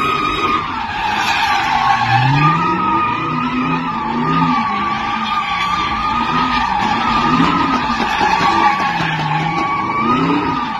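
A car's tyres squealing continuously as it spins in a cloud of tyre smoke, doing donuts. Its engine revs rise and fall underneath the steady high squeal.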